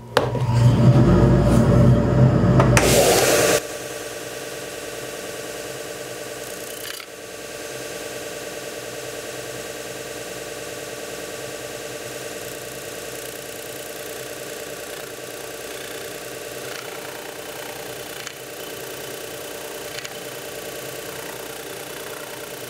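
Jet combination belt and disc sander running with wood pressed against its 9-inch sanding disc: a steady motor hum with a pitched drone under the rub of the abrasive on the wood. A much louder rush fills the first three and a half seconds and cuts off abruptly.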